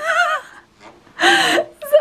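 A person's voice: a short, high, wavering vocal exclamation at the start, then a breathy spoken "No" a little over a second in.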